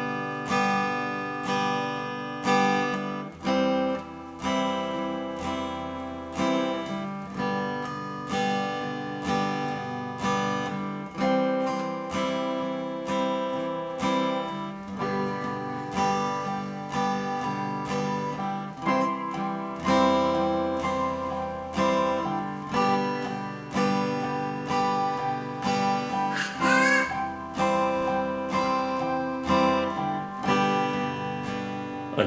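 Acoustic guitar playing a strummed instrumental introduction, a steady rhythm of repeating chords.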